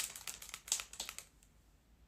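Plastic retail packets of Pokémon guitar picks crinkling and crackling as they are handled, a quick run of sharp crackles that stops about a second and a half in.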